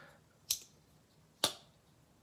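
A Rough Ryder folding pocketknife clicking twice, about a second apart, as its blade is snapped shut in the hand.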